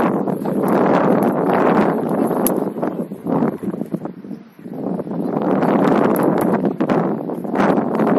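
Wind buffeting the camera's microphone in loud, uneven gusts, dropping away briefly about halfway through.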